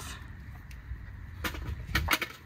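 Metal parts clicking and knocking as the heat shield and exhaust manifold gasket are worked off the cylinder head, with short sharp knocks about a second and a half in and again at the end, over a low steady rumble.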